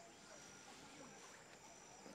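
Near silence, with a faint, high-pitched insect trill repeating in short pulses.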